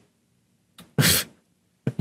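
A person's single short breathy exhale through the nose and mouth, a stifled laugh, about a second in. Faint mouth clicks come just before it and near the end.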